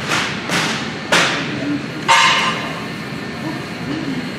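Four sharp metallic clanks of gym equipment, coming about half a second to a second apart, the last and loudest ringing briefly, over a murmur of voices.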